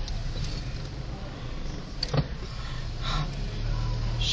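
Car cabin noise while driving slowly: a steady low rumble from the engine and tyres, with a single short knock about two seconds in.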